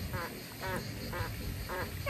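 Ducks quacking in a regular series, about two quacks a second, getting louder near the end.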